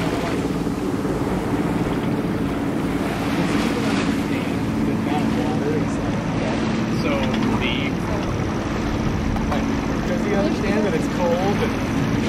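Wind buffeting the microphone and water rushing past the hull of a sailboat under way, over a steady low hum. Faint voices come through about midway and near the end.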